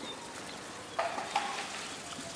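Steady low background hiss, with two faint short sounds about a second in.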